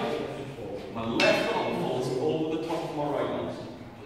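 Speech: a man talking in a large hall.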